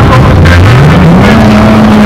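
Engines of several banger-racing cars running loud on a dirt track; about half a second in, one engine revs up, its pitch rising and then holding steady.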